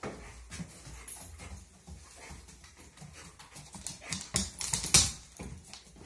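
A husky-type dog sniffing and panting as it works a scent search, with scuffs and a few sharper clicks and knocks as it moves; the sound is loudest about five seconds in.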